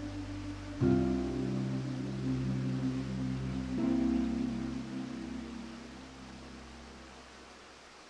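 Slow classical guitar music: a chord is plucked about a second in and another about four seconds in, each left to ring and fade away softly.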